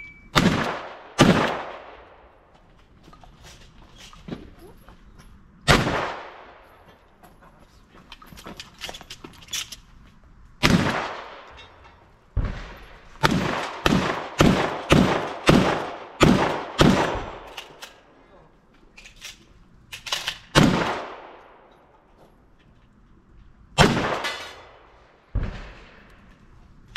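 Gunshots from a long gun during a timed practical-shooting course of fire. There are about seventeen loud shots, each with a short echo. Some come singly with pauses of several seconds between them, and there is a fast run of about two shots a second in the middle.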